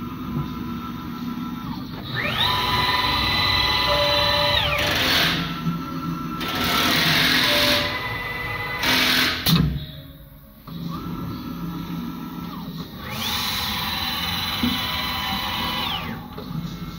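Metal-cutting CNC router spindle winding up to a high steady whine and spinning back down, twice. Between the runs there is a hiss and a sharp clack, as the spindle works at its automatic tool-changer rack.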